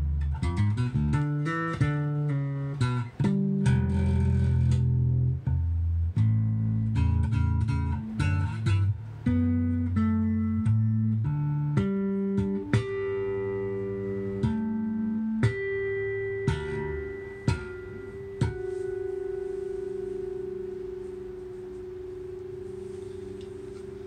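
Unaccompanied electric bass guitar played fingerstyle: a run of single plucked notes, closer together in the first few seconds and more spaced out later. It ends on one note, held for the last few seconds, that rings and slowly fades.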